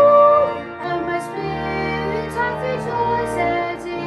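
Boy choristers' treble voices singing together, each voice recorded separately at home and mixed into one virtual choir. A held note ends about half a second in, and a new sung phrase follows.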